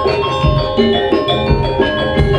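Javanese gamelan playing: bronze metallophones ring in layered, interlocking notes over recurring low drum strokes.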